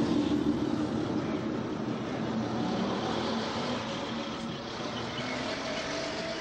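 Ikarus-260 bus's diesel engine pulling away from a stop, its low drone loudest at first and slowly fading as the bus drives off.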